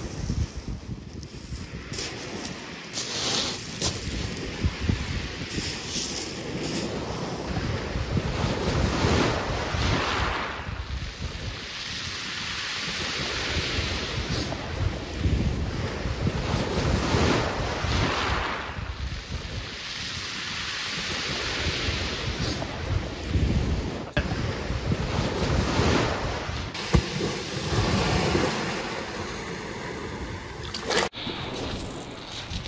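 Sea waves breaking and washing up the beach in repeated swells, with gusty wind buffeting the microphone.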